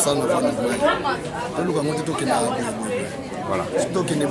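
Several people talking at once: overlapping chatter of voices in a large room.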